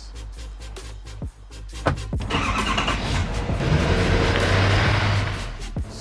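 A thump about two seconds in, then a truck engine starting and revving, growing louder, over background music. The engine is the Silverado's 6.6-litre Duramax turbo-diesel V8.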